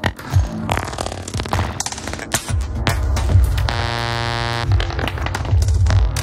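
Experimental electronic music (IDM) with heavy, throbbing bass, glitchy clicks and noise, and a brief sustained buzzing synth tone about four seconds in.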